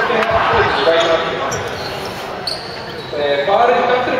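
A basketball bouncing on a hardwood gymnasium floor, with people's voices calling out in the hall.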